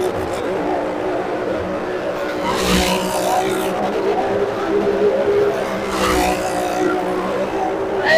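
A motorcycle's engine running hard as it circles the vertical wooden wall of a well of death, growing louder twice as it sweeps past, about every three seconds.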